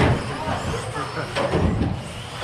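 Indistinct voices talking in a large echoing hall over the running of electric RC trucks on the track. There is a sharp knock at the very start.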